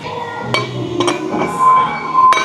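Eleiko 10 kg bumper plate being slid onto a steel barbell sleeve: a couple of metallic knocks and clinks as the plate's steel hub meets the bar.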